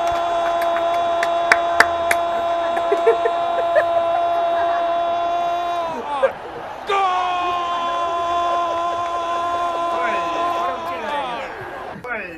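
A spectator's voice holding a long, steady shouted note for about six seconds. The note drops in pitch as it ends, and after a breath a second long note follows and falls away the same way. A few sharp claps sound in the first seconds.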